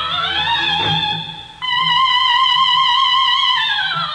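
A soprano voice climbing, then from about one and a half seconds in holding a loud high note with wide vibrato, sliding down near the end, over a quiet orchestra.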